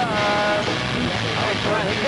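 A person's voice: a drawn-out call falling slightly in pitch, then indistinct talk, over a steady noisy background.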